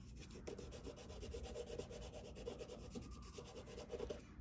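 An extra soft pastel stick scribbled back and forth on gray mixed media paper: faint, quick, repeated scratchy strokes.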